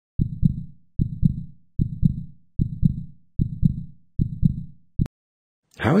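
Heartbeat sound effect: a steady lub-dub, six double beats about 0.8 s apart (roughly 75 beats a minute). The seventh beat is cut off abruptly with a click about five seconds in.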